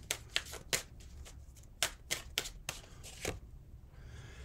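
A deck of tarot cards being shuffled by hand: a string of sharp, irregular card snaps that stops a little after three seconds in.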